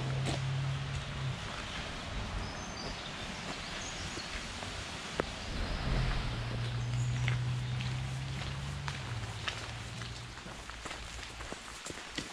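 Outdoor ambience on a wet gravel path: footsteps with light rain and scattered faint ticks. A low hum is heard at the start and again for a few seconds in the middle, and there are a few faint chirps.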